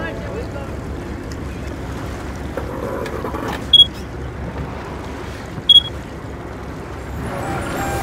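A small boat's engine running steadily with a low pulsing rumble and water noise. Two short, loud high-pitched beeps cut through it about two seconds apart.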